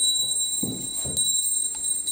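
A steady high-pitched tone, a pair of pure whistling pitches held without change, over quieter low sounds.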